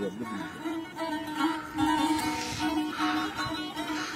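Traditional string-instrument music: a plucked melody over a steady held low note.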